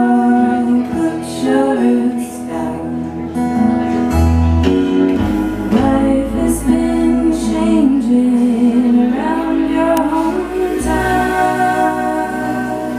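Live folk band playing: women singing a slow melody over acoustic and electric guitar.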